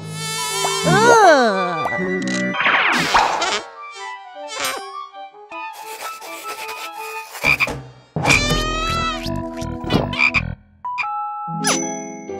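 Cartoon sound effects: a wavering, crying whimper in the first couple of seconds, then a frog croaking repeatedly in the second half.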